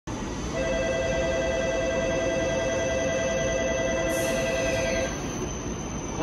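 Station platform departure bell ringing a steady two-tone electronic signal from about half a second in until about five seconds in, warning that the train is about to leave. A low rumble of station and train noise runs underneath, with a brief hiss near the end of the bell.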